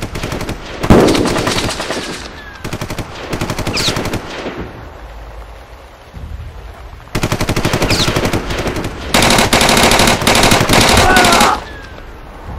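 Machine-gun fire in long rapid bursts, four runs of fast cracks, with one heavy bang about a second in that is the loudest sound. Brief rising whines cut through the bursts.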